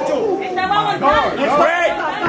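Several people talking and shouting over one another, with no other sound standing out.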